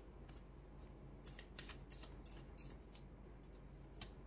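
Faint hand shuffling of a tarot deck: a few soft, brief crisp flicks and rustles of cards being slid and cut.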